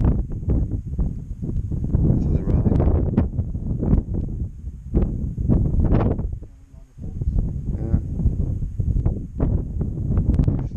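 Wind buffeting the camera microphone in irregular low gusts on open moorland, easing briefly about two-thirds of the way through.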